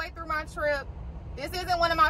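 A woman talking over the steady low rumble of a semi truck running, heard from inside the cab; the rumble stands alone in a brief pause about a second in.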